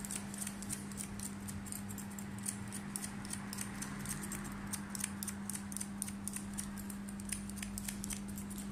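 Barber's hair-cutting scissors snipping hair over a comb in quick, crisp cuts, several snips a second, over a steady low hum.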